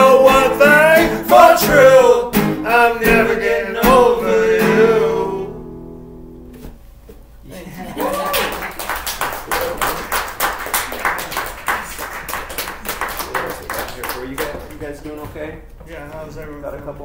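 Two acoustic guitars and two voices singing the final line of a song, ending on a held note that dies away about five and a half seconds in. A small audience then claps from about eight seconds, thinning out near the end.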